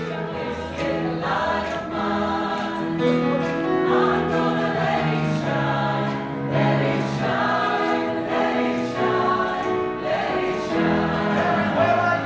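Mixed adult choir singing in parts, sustained chords moving from note to note over a steady beat, with piano accompaniment.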